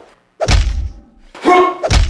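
Heavy blows struck with a long club swung overhead, landing as loud deep thuds about a second apart. A short pitched sound rings out with the second blow.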